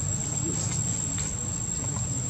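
Insects buzzing in one steady, high-pitched tone, over a low rumble and a few faint light clicks.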